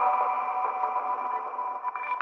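Ambient electronic music: held synthesizer tones with a sonar-like echo, gradually getting quieter.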